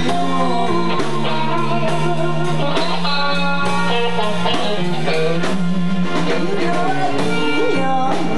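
Live band playing a blues number: electric guitar, bass guitar and drum kit, with a woman's lead vocal at times.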